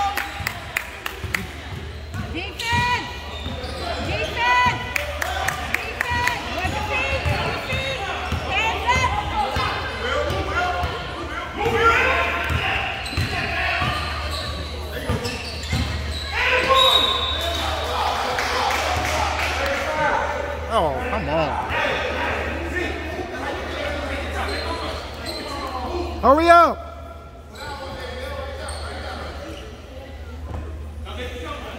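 Basketball game in a gym: a ball bouncing on the hardwood floor, short high shoe squeaks and players' and spectators' voices, echoing in the large hall over a steady low hum. A louder pitched call comes shortly before the end.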